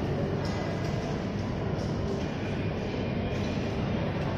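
Steady low rumble and hum of a moving vehicle heard from inside its cabin, with no change in level.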